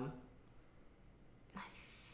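A man's soft breath, a brief breathy hiss near the end, after about a second and a half of near silence; the tail of a spoken 'um' trails off at the very start.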